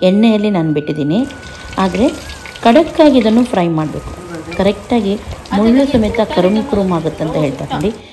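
Masala-coated fish deep-frying in hot oil, a steady sizzle, with a wooden spatula scraping against the pan as the fish is turned. A woman talks over it, and her voice is the loudest sound.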